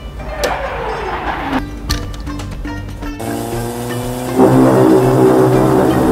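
Race-car engine sound effect over background music: the engine pitch falls steadily through the first second and a half, like a car passing by. The music swells and is loudest from about four and a half seconds in.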